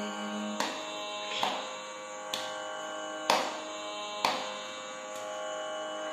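A held sung note ends about half a second in. After it a tanpura drone sounds alone, steady, with a string plucked roughly once a second, as the accompaniment to a Carnatic song in Dheera Shankarabharanam.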